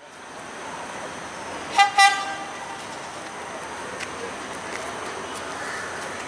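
Diesel passenger power set's horn giving a short double toot about two seconds in, over the steady running noise of approaching trains.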